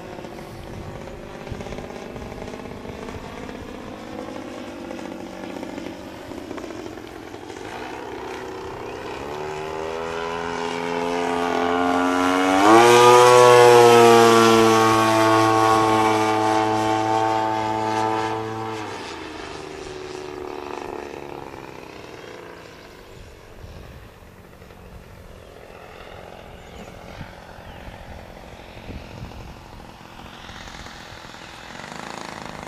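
The RCGF 55cc two-stroke gas engine of a giant-scale RC aerobatic plane in flight. It grows louder as the plane comes closer, rises sharply in pitch about twelve seconds in, and holds a loud steady note for about six seconds. Then it drops in pitch and fades as the plane moves away.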